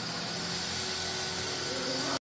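Steady hiss with a low hum and a few faint steady tones over it, from machinery running in a workshop.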